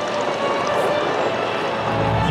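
Steady drone of an F8F Bearcat's 18-cylinder Pratt & Whitney R-2800 radial engine and propeller as the plane makes a slow pass.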